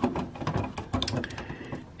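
Light, irregular clicks and taps of hard plastic parts as a Robot Spirits Earlcumber action figure and its shield are handled and posed by hand.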